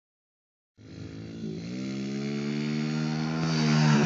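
Small dirt bike engine running at a steady throttle as the bike approaches, growing louder throughout. The sound starts about a second in, with a brief dip in pitch at about one and a half seconds before it steadies and climbs slightly.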